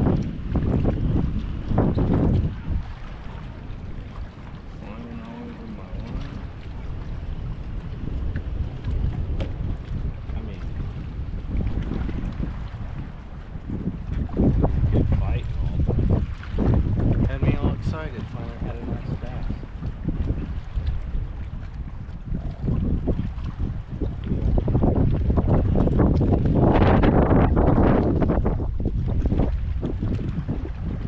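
Strong wind buffeting the microphone: a heavy, low rumble that swells and drops with the gusts, loudest in a long gust near the end.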